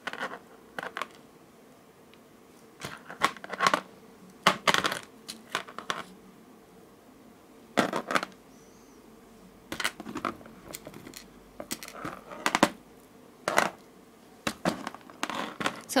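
Irregular small clicks and taps of beads and tools being handled and set down on a hard work surface, coming in short clusters.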